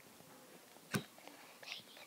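A person whispering faintly, with small clicks and one sharp click about a second in.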